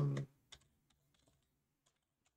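A handful of faint, widely spaced keystrokes on a computer keyboard as a command is typed.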